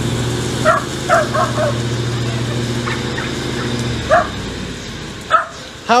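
A steady motor hum, with a quick run of four short, high animal calls about a second in and single calls near the end.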